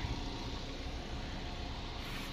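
A car engine idling steadily, a faint low hum under an even hiss.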